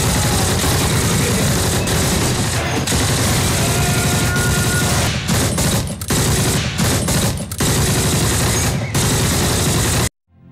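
Continuous machine-gun and rifle fire, a dubbed war-film battle sound effect, with a few short breaks in the second half. It cuts off suddenly at the end.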